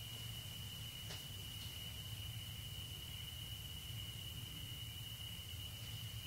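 Quiet room tone: a low steady hum and a faint, steady high-pitched whine, with one soft click about a second in.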